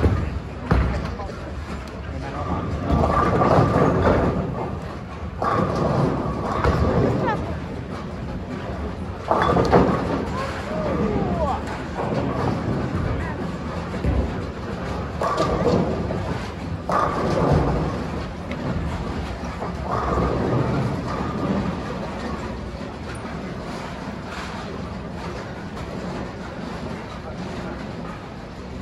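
Bowling-alley hall sound: the voices of players and spectators talking over a steady low rumble of balls and pins from the lanes, with a sharp thud at the very start. The talk comes in bursts through the first twenty seconds or so and thins out near the end.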